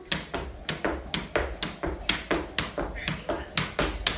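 Jump rope slapping a hardwood floor and feet landing, a steady rhythm of sharp taps about four a second.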